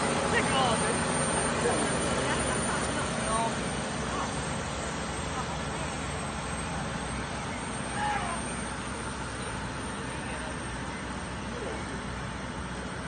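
Heavy-haul tractor unit and a long multi-axle transporter trailer rolling slowly past: a steady low engine and tyre rumble that fades slightly as the rig moves on, with people's voices in the background.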